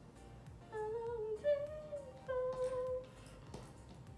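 A woman humming a short wandering tune in three brief phrases, stopping about a second before the end, over quiet lo-fi background music with a soft beat.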